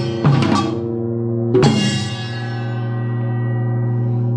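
Samul nori ensemble (janggu, buk, kkwaenggwari and jing) playing its closing strokes: a few hits, then one loud final unison strike about a second and a half in. After it the jing (large gong) rings on steadily with a low hum.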